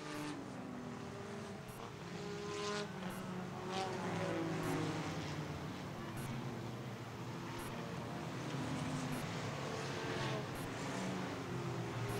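A field of enduro stock cars running laps around the oval, heard faintly from across the track. Several engine notes overlap, rising and falling as the cars go around.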